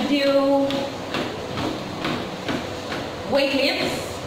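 A person's voice in short phrases near the start and again near the end. Under it are soft, regular thuds of footsteps on a treadmill belt, about two a second.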